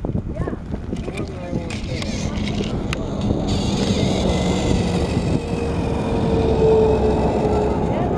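A battery-powered Trackmaster toy engine (Toby) is switched on about three and a half seconds in, and its small motor whirs as it runs along the plastic track. Under it, vehicle noise from traffic swells and then eases slightly near the end.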